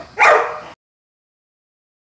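A dog barks once, a single short bark just after the start.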